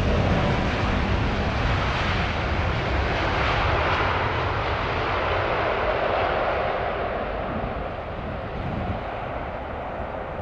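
Qantas Airbus A380's four Rolls-Royce Trent 900 turbofans running at taxi power as the jet rolls past: a steady jet rumble with a hissing whine, easing off in the last few seconds as it moves away.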